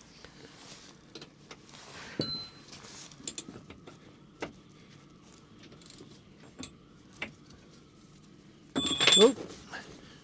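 Socket ratchet and steel tools clicking and clinking on the last clamp bolt of a boat's rudder-stock collar, in irregular taps with a louder clank about two seconds in. Near the end comes the loudest moment, a man's 'Oh' as the bolt comes free.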